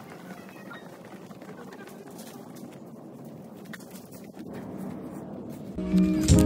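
Quiet indoor room sound with faint background voices and a few soft footsteps on a tiled floor.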